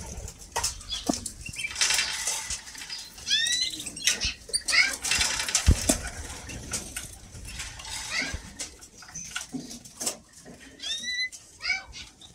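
Caged canaries and a goldfinch fluttering and hopping about their wire cages, with many small clicks and rustles. Short curved chirp calls come in little runs a few seconds in and again near the end.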